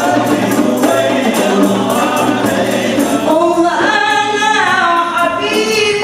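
Rebana frame drums beating a steady rhythm under male singing. In the second half the drumming thins while a long sung phrase falls in pitch.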